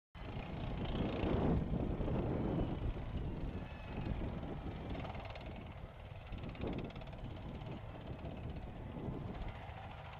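M1 Abrams tanks on the move, their gas turbine engines running over a continuous rumble of tracks, loudest in the first couple of seconds and easing off after that.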